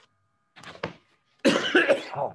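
A person coughing: a small cough about half a second in, then a louder, rougher one near the end.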